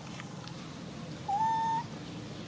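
A single short coo call from a pigtail macaque, one clear tone rising slightly in pitch, about half a second long, starting a little over a second in.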